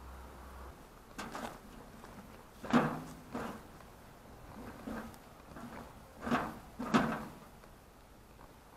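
Empty metal wheelbarrow pushed over bumpy grass, its steel tray clanking and rattling at the bumps: about seven separate knocks, the loudest about three seconds in and near the end.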